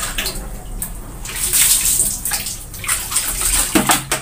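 Clothes being hand-washed in a plastic basin of soapy water: water sloshing and fabric being rubbed and squeezed, in repeated uneven surges.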